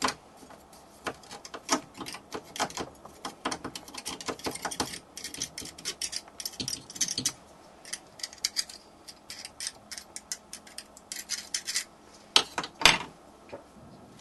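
Rapid, irregular light clicks and clinks of small metal objects being handled, with a sharper pair of knocks near the end.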